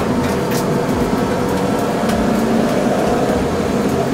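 BMW E30 325i's 2.5-litre inline-six engine heard from inside the cabin, pulling at track pace, with the engine note shifting about halfway through.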